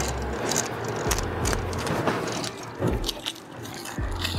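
Scraping and rustling with many small metallic clicks: an old receptacle and its stiff wires being worked out of a metal electrical box by hand.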